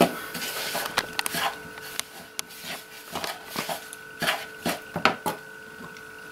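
A hand mixing flour and water into pizza dough in a plastic bowl: irregular rubbing and scraping with scattered light knocks against the bowl.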